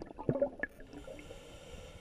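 Underwater gurgling and bubbling from a scuba diver's breathing, which cuts off less than a second in and leaves a faint hiss.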